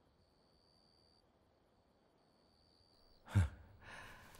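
Near silence, then near the end a man's short, breathy sigh.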